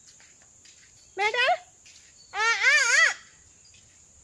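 A young child's voice calling out twice without words, high-pitched and wavering up and down, the second call longer than the first.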